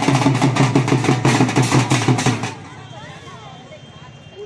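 Dhol drums beating fast with crowd voices over them, cutting off about two and a half seconds in and leaving quieter voices.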